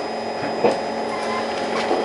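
Steady hum inside a Singapore MRT train car, from its air conditioning and running equipment, with a faint click about half a second in.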